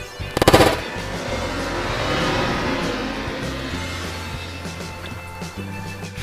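A brief rapid rattle of sharp cracks about half a second in, followed by a steady noisy wash under background music.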